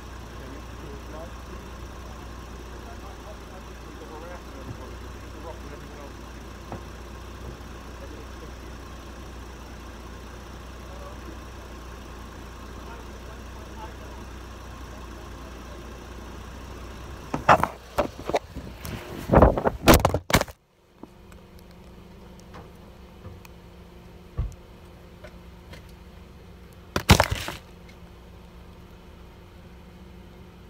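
Car engine idling steadily, heard from inside the car, with faint voices outside. Around two-thirds of the way in comes a cluster of loud knocks and handling noises, after which the engine hum stops. A single loud knock follows near the end.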